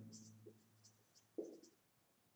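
Marker pen writing on a whiteboard: a few short, faint strokes as letters are drawn.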